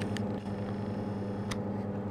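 Steady low electrical mains hum from the running valve amplifier and bench test gear, with a single click about one and a half seconds in.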